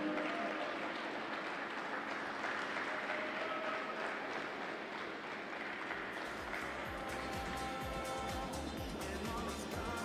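Audience applause after a skating performance, fading from the start and then continuing at a lower, steady level, with background music and a low beat coming in about six seconds in.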